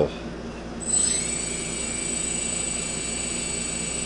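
Quadcopter's four brushless motors spinning up together about a second in, then running at a steady high-pitched whine. They are running at pretty even power, the sign that the motor sync problem is fixed.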